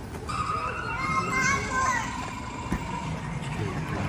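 Children's voices in a crowd, with a high, wavering child's squeal running for about two seconds from just after the start.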